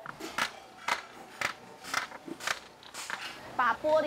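Irregular sharp clicks and snaps of a second-hand toy's hard plastic and metal parts being pried and worked apart by hand, about a dozen in a few seconds. The parts are stuck tight and hard to separate.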